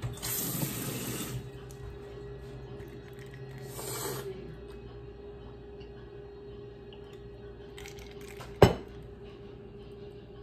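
Kitchen tap running for about a second as a glass is filled with water, then a second, shorter run about four seconds in. A single sharp knock comes near the end.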